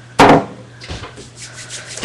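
Ice cream maker's freezer bowl being set down and scraped against a surface: one loud, short rubbing scrape a quarter second in, then a softer one about a second in.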